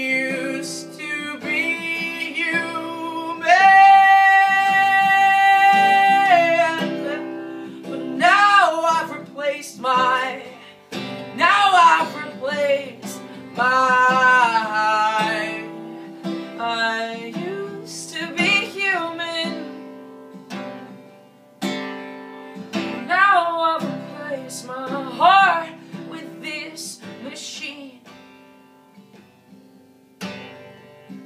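Acoustic guitar being strummed while a man sings over it in long held notes, one held for about three seconds early in the stretch. The playing grows quieter toward the end.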